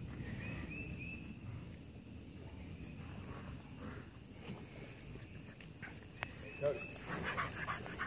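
Faint high-pitched puppy whines and yips: a few short cries about half a second in, and more near the end.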